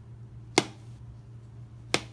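Kitchen knife cutting through peeled banana and striking the plastic cutting board: two sharp knocks about a second and a half apart, over a low steady hum.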